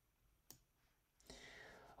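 Near silence, broken by a single faint click about half a second in and a soft, breath-like hiss near the end.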